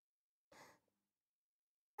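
Near silence, with one faint, short breath from a woman about half a second in.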